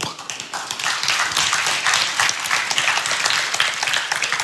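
Congregation applauding: many hands clapping at once in a steady spell that fills the pause.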